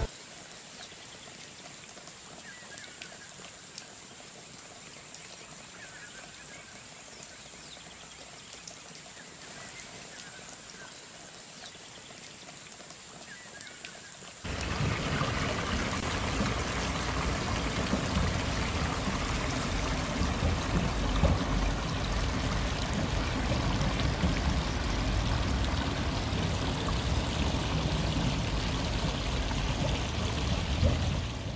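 Water spilling over a low stone step in a garden stream: a steady splashing rush that starts abruptly about halfway through, after a quieter stretch of outdoor ambience with a few faint chirps.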